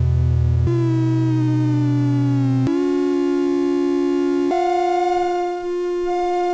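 SOMA Lyra-8 organismic synthesizer voices droning while they are tuned to intervals. Sustained notes, one sliding slowly downward, shift abruptly to new pitches three times.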